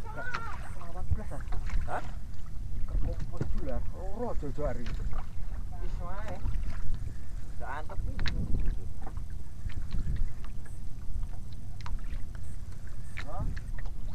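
Steady low rumble aboard a small outrigger fishing boat at sea, with voices talking now and then over it.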